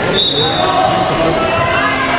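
Voices of coaches and onlookers calling out across a gymnasium during a wrestling bout, with a brief high-pitched tone a quarter of a second in.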